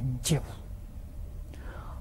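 An elderly man speaking Mandarin finishes a word at the start, then pauses for about a second and a half, leaving only a faint steady low hum of room tone before he speaks again.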